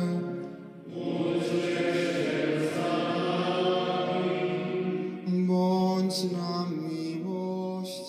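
Sung chant: voices holding long notes that change pitch now and then, fuller in the middle and beginning to fade near the end.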